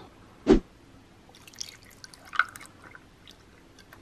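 A single thump about half a second in, then faint drips and small splashes of water poured into a glass bowl of dried soap nut shells.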